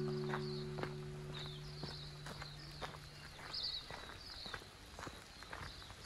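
Footsteps crunching on a gravel path at about two steps a second, with small birds chirping over them. A held music chord fades out during the first few seconds.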